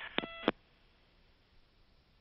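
A short electronic beep on the radio commentary loop: one steady tone about a quarter second long, with a click at its start and end, about a quarter second in. Then near silence, only faint hiss.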